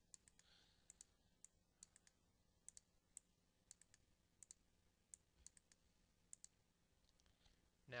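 Faint computer mouse clicks, many in quick pairs, repeating every second or so over low room hiss.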